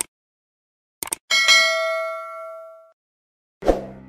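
Subscribe-button sound effects: a mouse click, then a quick double click, followed by a bright bell ding that rings out and fades over about a second and a half. A short thump comes near the end.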